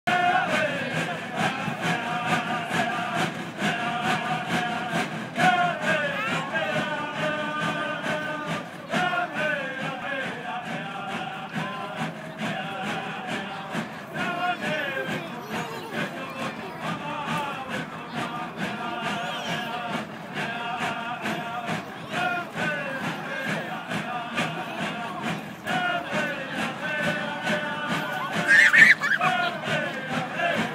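Ute Bear Dance song: a group of men chanting together over a steady rhythm of rasping strokes from notched-stick rasps (moraches). A brief, louder high call cuts through near the end.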